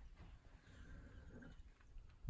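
Near silence: faint outdoor ambience, with a faint thin high tone about halfway through.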